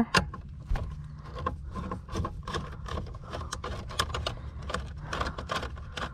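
Hand screwdriver backing out a long Phillips screw from the plastic trim under a car dashboard: a steady run of small, irregular clicks and scrapes, with a low hum underneath.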